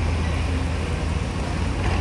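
Steady road traffic noise with a continuous low engine rumble.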